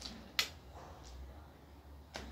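A single sharp click about half a second in as small toy train cars are snapped together, followed by faint handling ticks.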